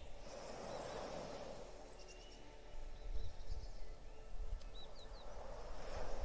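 Faint birdsong, a few short high chirps and calls, over a soft steady wash of ocean waves.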